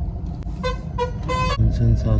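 Vehicle horn honking three short beeps in quick succession, each a steady single pitch, over the low rumble of traffic.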